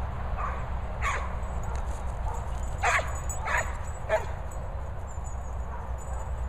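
A dog yapping while giving chase: about five short, high barks spread over the first four seconds, the loudest near the middle, over a steady low rumble.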